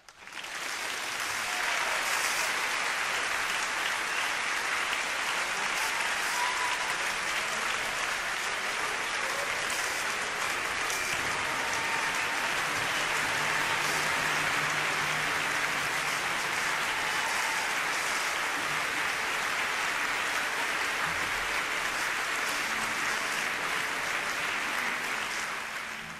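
Large concert-hall audience applauding, breaking out abruptly and keeping up at a steady level.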